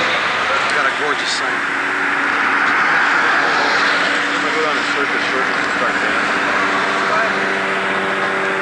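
Busy street ambience: a steady roar of passing traffic with indistinct voices underneath.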